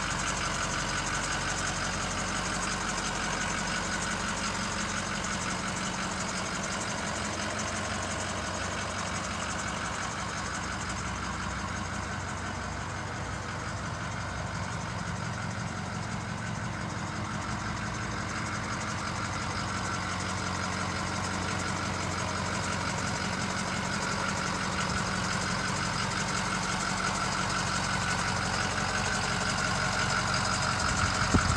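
A 2007 Ford F-550's 6.0L Powerstroke V8 turbo-diesel idling steadily, a little quieter about halfway through and louder again near the end.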